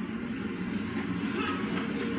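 Subway train running, a steady rumble that starts abruptly as the clip begins, played back from a TV clip through a speaker into the room.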